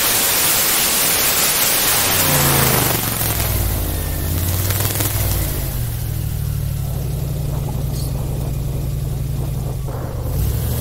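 Airboat engine and caged propeller running, with a loud rushing hiss over it. About three seconds in the hiss falls away, leaving a steady low engine drone.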